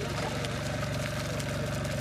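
A tractor's engine running steadily at an even speed, with faint voices.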